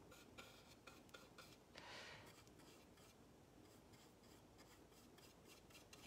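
Near silence. A size 1 paintbrush lays an acrylic wash on canvas, heard as faint light ticks and rubbing in the first couple of seconds, with a soft hiss about two seconds in, then only room tone.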